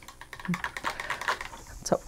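A quick, irregular run of light clicks and taps from small hard objects.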